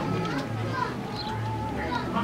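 Background voices of children and other people talking and calling out, over a steady low hum.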